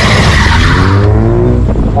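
A car spinning its wheels in a burnout: the tyres squeal with the engine at high revs. About halfway through, the squeal dies away and the engine note climbs as it revs harder.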